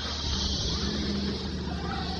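Steady outdoor ambience of a tropical garden: a continuous high-pitched insect buzz over a faint, steady low hum.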